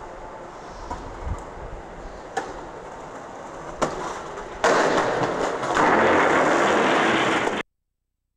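Skateboard on concrete: wheels rolling with two sharp board clacks, then a loud, rough scrape of about three seconds as the trucks grind along a concrete ledge, cut off abruptly.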